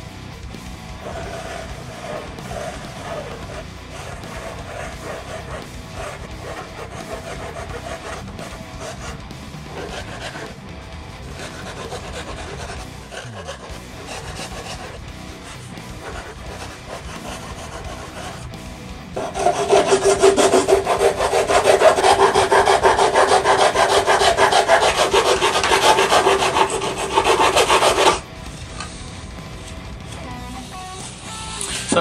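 Hacksaw cutting through a thin carbon-fibre sheet laid on a wooden board, stroke after stroke. About two-thirds of the way in, a much louder, steady grinding sound with a held tone takes over for about nine seconds, then stops suddenly.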